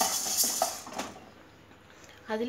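Dry urad dal rattling and scraping in a metal pan with a few light clinks, dying away after about a second.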